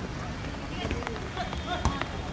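Voices calling out across an outdoor football pitch during play, with one sharp thump near the end.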